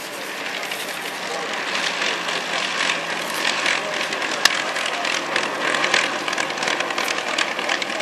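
Avro Lancaster bomber's four Rolls-Royce Merlin V12 engines running as it taxis past, growing louder over the first two seconds and then holding steady. A single sharp click about halfway.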